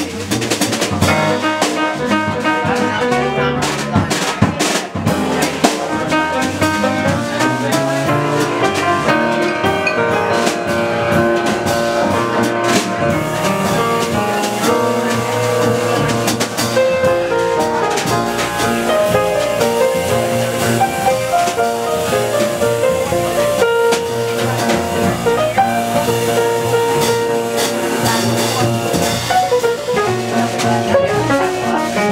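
Live jazz piano trio, with grand piano, bass and drum kit, playing a jazz waltz, the piano carrying the melody over the bass and drums. Several sharp drum hits stand out in the first few seconds.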